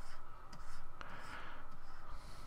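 Stylus scratching and tapping on a pen tablet, quiet, with one sharp tap about a second in.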